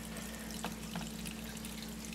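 A thin stream of beer wort, cooled on its way through a chiller, trickles from a hose into wort pooled in a plastic fermenting bucket, with a few small splashes. A steady low hum runs underneath.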